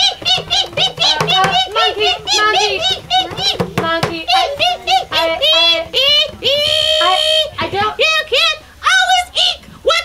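A puppeteer's high-pitched monkey voice chattering in rapid, squeaky wordless calls, with one long held squeal about seven seconds in.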